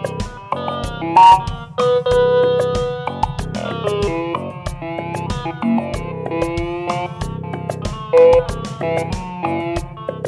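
Roland Juno-DS synthesizer played live, a changing line of notes over a steady beat from an SR16 drum machine, which also triggers some of the notes.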